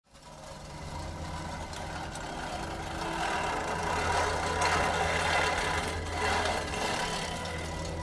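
A steady low drone that fades in from silence, with a rushing hiss that swells in the middle and eases off near the end.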